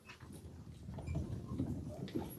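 Faint shuffling and a few scattered small knocks and thumps in a quiet church hall.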